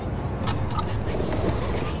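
School bus engine idling with a low, steady rumble, under faint murmuring of children's voices and a few light clicks.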